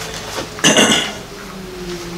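A short, sharp clink of a hard object knocked or set down, about two-thirds of a second in, over a faint steady low hum.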